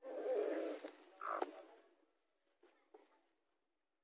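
Rustling of the sack-cloth nest lining and feathers as eggs are pushed under a broody native hen. A short, louder sound with a pitched edge comes about a second and a half in, likely a brief call from the hen, and a few faint light knocks follow near the end.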